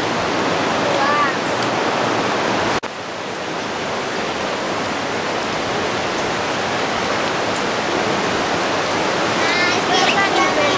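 Steady rushing of water, an even hiss with no rhythm to it. It breaks off for an instant about three seconds in and comes back a little quieter.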